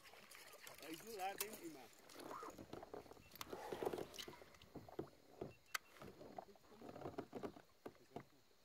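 Faint handling sounds from a fishing kayak and rod: a few sharp clicks and knocks with some water noise, while an angler plays a hooked fish.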